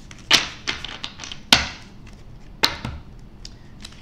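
Tarot cards being handled, giving about six separate sharp taps and snaps. The loudest comes about a second and a half in.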